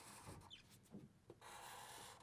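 Near silence with the faint scratch of felt-tip markers drawing lines on paper, in two short stretches: one at the start and one in the second half.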